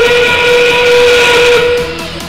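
Field sound system playing a steam-train whistle, one long blast of several steady tones that ends just before the two-second mark: the FRC signal that 30 seconds remain and the endgame has begun.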